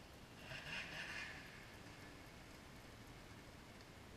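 Faint snowmobile engine running at a distance, with a brief swell of hiss about half a second in.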